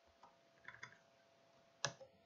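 Faint computer keyboard keystrokes as digits are typed: a few quick soft taps about two-thirds of a second in, then one sharper click near the end.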